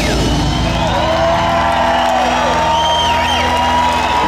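A live rock band's final chord rings out in held, steady notes while the audience cheers and whoops, with rising and falling whistles over it: the end of a song.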